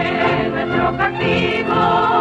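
A chorus of women's voices singing an anthem with musical accompaniment, from an old black-and-white film soundtrack.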